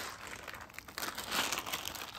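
A plastic candy bag of Cadbury Mini Snowballs crinkling as it is held and turned over in the hands, with denser crinkling from about a second in.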